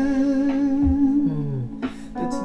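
A man's voice holding a long, wavering note with vibrato in a Thai pop ballad, fading near the end, over soft low beats about once a second.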